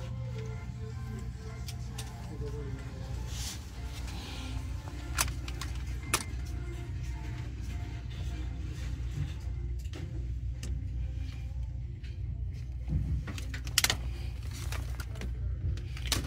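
Faint background music over a steady low hum, with a few sharp clicks and knocks from objects being handled in a plastic crate.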